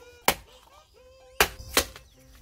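A stone chunk smashing down on a sea snail shell against a concrete floor, three sharp cracking strikes: one early, then two in quick succession a second later, breaking the shell to get at the meat.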